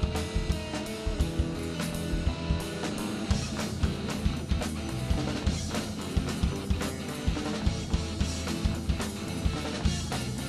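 A live band plays an instrumental passage on amplified electric guitar, electric bass and drum kit, with the drums hitting a steady driving beat.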